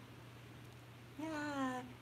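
Speech only: a short pause with a steady low room hum, then a woman's drawn-out "yeah" with falling pitch a little past halfway.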